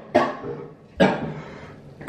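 A person coughing twice, about a second apart, each cough sharp at the start and fading quickly.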